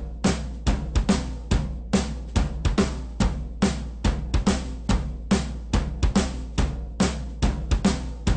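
Opening of a rock song: a drum kit plays a driving beat of bass drum and snare hits, about three to four strikes a second, over a steady low bass.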